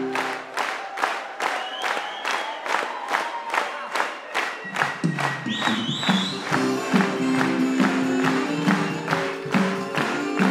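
Audience clapping in time, about three claps a second, over upbeat music; a bass line joins the music about halfway through.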